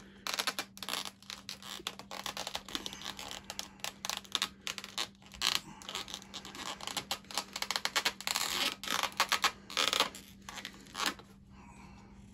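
Rubber parts of a large X-Plus Godzilla figure rubbing, scraping and creaking in irregular quick bursts as the tail is forced by hand into the socket in the body. The soft rubber is stiff and binding, so it goes in only with hard pushing and friction.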